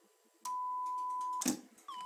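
Steady 1 kHz test tone from a reel-to-reel tape recorder's measurement setup starts about half a second in, then cuts out with a sharp click as the machine is switched into record. The tone comes back with a brief slide in pitch, now carrying a faint overtone at three times its pitch, the tape's distortion being measured.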